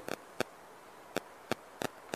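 About six short, sharp clicks at uneven intervals over faint background hiss.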